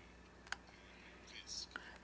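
Quiet room tone in a pause between spoken phrases, with one faint sharp click about halfway and a soft breathy hiss near the end.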